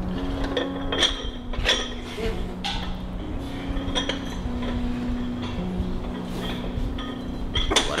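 Iron dumbbells clinking, metal striking metal about five times at uneven intervals as they are lifted, over background music with low held notes.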